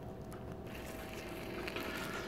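Quiet background noise with a faint, steady hum and no distinct events.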